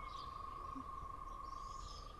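Faint, steady high-pitched trilling from an insect chorus, with a few faint bird chirps over it.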